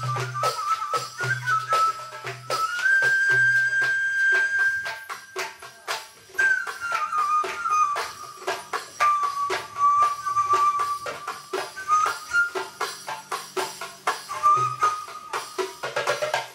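Live Arabic ensemble music: a sustained melody of long held notes that slide from pitch to pitch, over rapid, dense hand-percussion and tambourine strikes, with oud and qanun in the ensemble.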